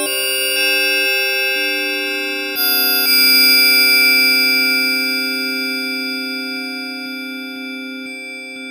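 Bell-like synthesizer patch played from a MIDI keyboard: a few notes are added to a held chord in the first three seconds, then the chord rings on and slowly fades.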